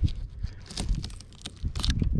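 Fillet knife slicing up along the back of a redfish through its scales and skin: a run of irregular crackly, crunching scrapes.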